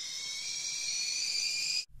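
A high whistling tone, several pitches sounding together, swelling steadily louder and then cutting off abruptly just before the end: a cartoon sound effect of a temper rising, like a kettle coming to the boil.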